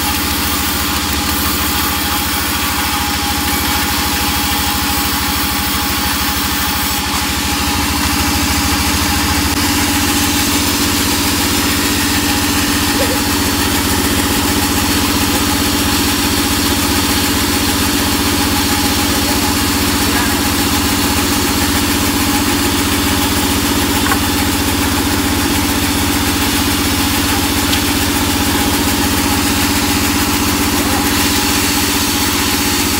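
Large sawmill band saw running steadily while teak timber is ripped into planks, its drive humming at a constant pitch. The running note shifts and grows a little louder about nine seconds in.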